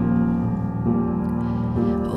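Grand piano playing held chords between sung lines, a new chord struck just under a second in and left ringing.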